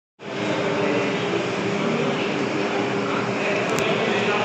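Ceiling fans running in a large hall, a steady whirring hum with a few low steady tones. It starts abruptly after a split-second dropout.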